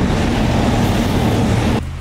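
Steady road and engine noise inside a moving camper van's cab, a loud even rush of tyres over a low rumble. It drops away suddenly near the end.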